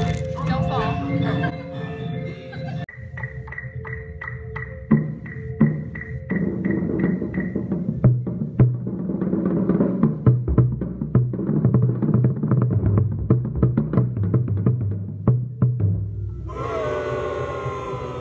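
Bass drum struck repeatedly in a practice passage, the low notes stepping between several pitches, after a few seconds of voices.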